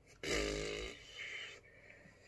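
A man's short, low closed-mouth hum, falling slightly in pitch, followed by a fainter second murmur about a second in.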